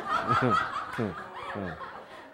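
A small audience laughing and chuckling, several voices overlapping, with short bursts of laughter about half a second, one second and a second and a half in.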